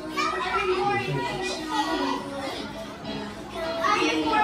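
Children's voices talking and playing over each other, with music playing underneath.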